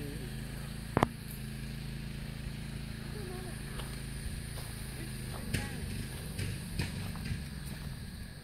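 A steady low motor hum, like an idling engine, with a sharp double click about a second in and scattered short knocks in the second half.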